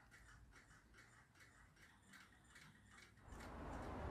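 Near silence with faint, even ticking, about three or four ticks a second. A little past three seconds the ticking stops and a steady faint hiss takes over.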